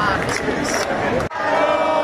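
A crowd of protesters shouting and chanting. About a second and a quarter in, the sound breaks off sharply, and many voices follow holding a chant together in unison.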